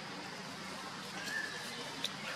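Steady outdoor background hiss with one short, high-pitched animal call about a second in.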